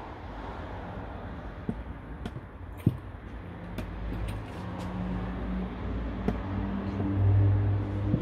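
A low, steady motor hum that sets in a few seconds in and grows louder near the end, with a few light clicks before it.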